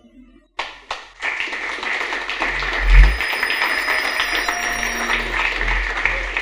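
Audience applauding in a hall. A few single claps come first, then the full applause builds about a second in and holds steady.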